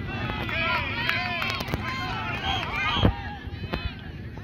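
Several voices shouting and calling at once on an open soccer field, overlapping one another, with a single loud thump about three seconds in.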